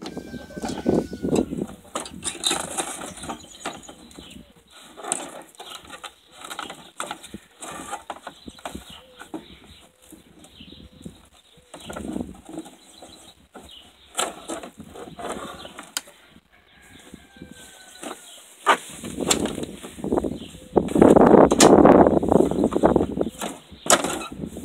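The fiberglass body of an old AMF electric golf cart is tipped up off its frame, giving irregular knocks, rattles and scrapes. A louder stretch of rustling noise comes near the end.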